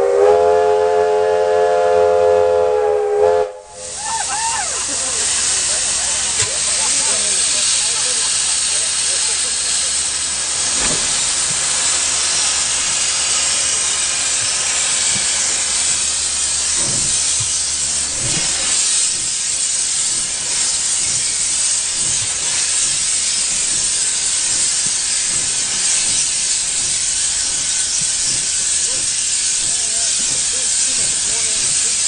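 A steam locomotive's whistle sounds for about three and a half seconds at the start, then cuts off abruptly. After that comes a steady hiss of steam escaping beside the locomotive.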